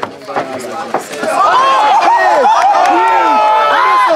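A few sharp thuds in the first second as a wrestler is struck and taken down on the backyard ring's mat. They are followed by a small crowd of onlookers shouting and calling out, some voices held long.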